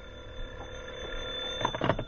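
Telephone bell ringing steadily with a fast trill, a studio sound effect in a 1940s radio drama, followed by a few clicks near the end.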